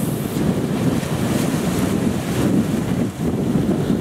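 Sea waves breaking and washing over rocks, with wind buffeting the microphone in a steady low rumble that drops away briefly about three seconds in.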